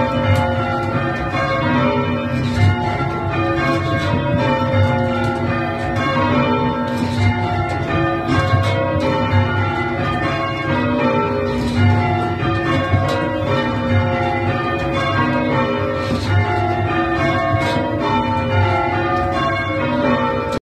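A ring of church tower bells rung full circle by ropes in change ringing. The bells strike one after another in quick, even succession, their tones overlapping and ringing on without a break, heard from the ringing chamber beneath the bells.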